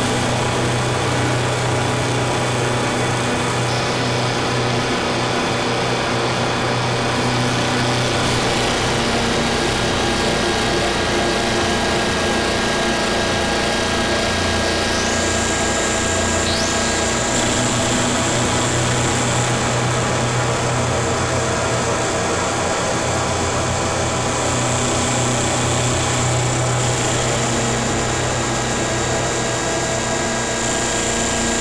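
Harsh electronic noise music: a steady, dense wall of distorted noise over a low drone, with many sustained tones layered in. About halfway through, high whistling tones slide up and then hold.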